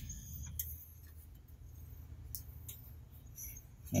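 Faint clicks and handling noise of hands working wire connectors behind a truck's front bumper, over a low steady hum.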